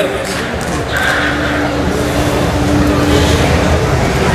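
Spectators shouting encouragement to posing bodybuilders, one voice holding a long drawn-out call, over a steady low rumble of the crowded hall.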